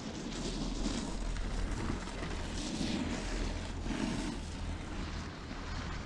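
Wind noise on the microphone over a steady low rumble, rising in several surges, while riding a moving chairlift.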